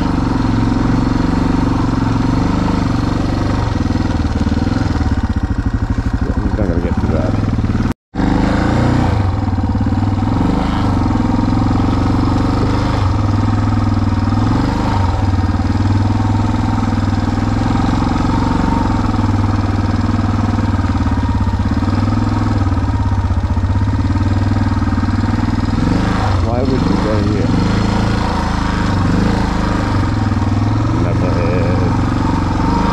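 Vehicle engine running as it climbs a rough dirt trail, its pitch rising and falling with the throttle. The sound cuts out completely for a moment about eight seconds in.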